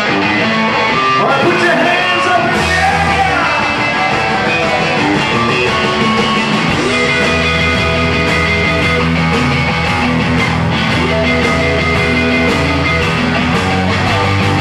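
Live blues-rock band playing: two electric guitars, bass guitar and drums. A bending lead-guitar line opens, and the bass and full band come in heavier a few seconds in.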